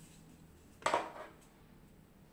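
A short, sharp clack of hard plastic a little under a second in, with a quieter knock just after: a plastic toothpaste dispenser and its plastic wall holder being handled.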